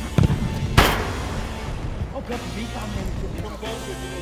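A football kicked hard: a softer thump just after the start, then a sharp, loud smack just under a second in that echoes around a large indoor hall. Background music plays throughout.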